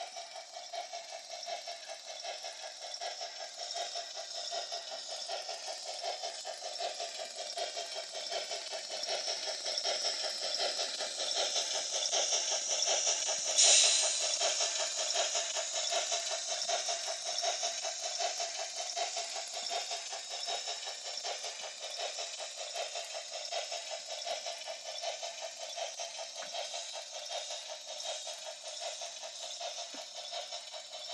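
Gn15 model locomotive running on its track: a steady electric motor hum with rattling wheels, louder through the middle and with one sharp click about fourteen seconds in.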